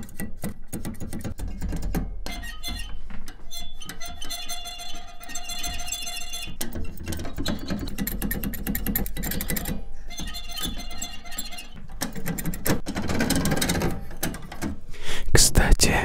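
Keys of an unplugged Polivoks synthesizer pressed close to a microphone: a dense run of mechanical clicks and clacks from the key action, with a brief ringing tone about a third of the way in.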